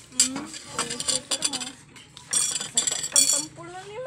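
Metal spoons and dishes clinking and clattering as they are handled on a table, in a string of sharp clinks with the loudest run about two and a half to three and a half seconds in.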